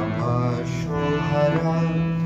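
Harmonium playing held notes of a Pashto ghazal melody over a steady low drone, with no tabla strokes.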